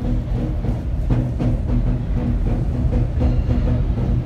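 Music with a steady drum beat and a deep bass line.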